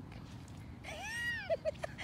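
A single high-pitched cry about a second in that rises and falls in pitch, followed by two or three short chirps.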